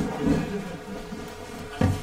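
A steady electrical buzz made of several held tones, with a short low thump shortly before the end.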